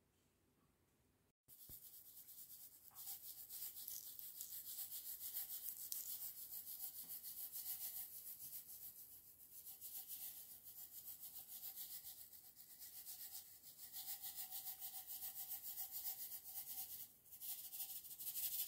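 Nonpareil sprinkles rattling inside a small shaker jar as it is shaken out: a fast, high rattle in several spells with short pauses between them.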